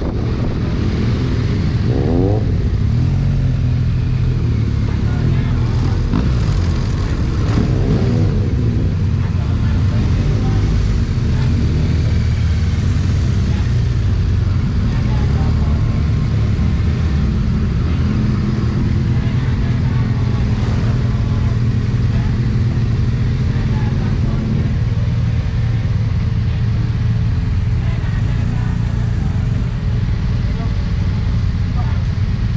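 Motorcycle engines running at low speed, heard from the rider's helmet, with the pitch rising and falling a few times in the first ten seconds and then settling into a steady low run as the bikes pull in.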